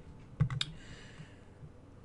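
A few faint computer keyboard key clicks about half a second in, then a soft hiss.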